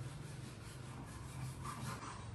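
Dishes being scrubbed at a kitchen sink: faint, quick, repeated rubbing strokes over a low steady hum.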